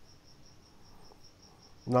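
Near silence: quiet room tone with a faint, steady high-pitched tone running throughout; a man's voice starts right at the end.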